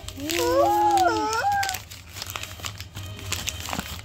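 A baby's drawn-out vocal sound lasting about a second and a half, its pitch wavering up and down, followed by faint rustling and small clicks.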